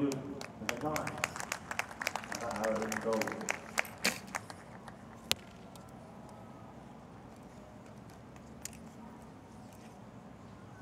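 Indistinct voices with scattered sharp clicks and claps for the first four seconds or so, then one sharp click a little after five seconds. After that, only a low, steady outdoor background.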